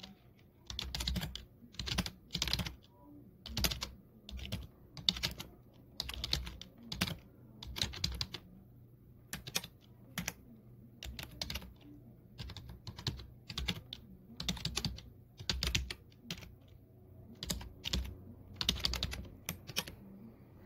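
Typing on a computer keyboard: irregular runs of keystrokes separated by short pauses, as text is entered through a pinyin input method.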